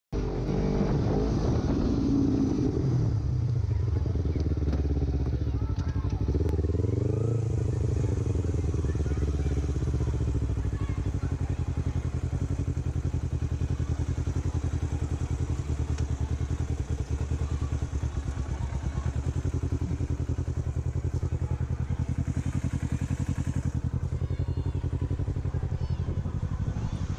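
Sport motorcycle engine heard from the rider's position, its pitch rising and falling as the bike rides through traffic over the first ten seconds or so. It then settles into a steady idle with an even pulse once the bike has stopped at the kerb.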